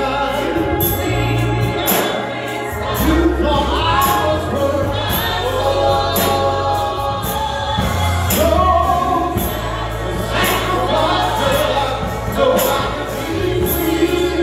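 Gospel music: a man singing into a microphone over an instrumental backing with a deep bass line and a steady beat.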